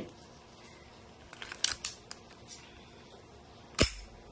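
Metallic clicks of a semi-automatic pistol's action being worked by hand: several light clicks about one and a half to two seconds in, then one louder, sharp snap near the end.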